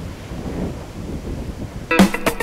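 Low, steady rumbling background noise of an outdoor set, with music starting suddenly right at the end.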